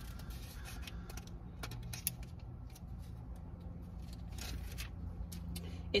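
Bible pages being leafed through and handled: light paper rustles, crackles and scattered clicks over a low steady hum.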